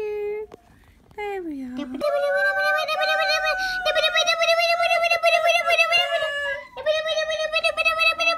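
A child's high-pitched voice making long, drawn-out, wavering vocal sounds in play: a short falling glide, then two long held notes of about four and two seconds.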